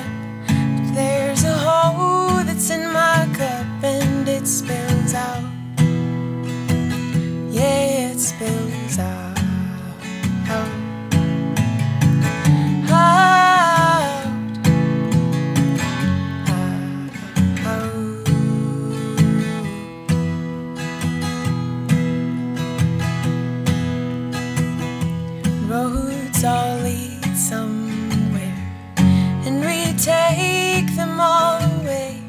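Acoustic guitar strummed steadily through an instrumental passage of a song, with a few brief wordless vocal phrases now and then.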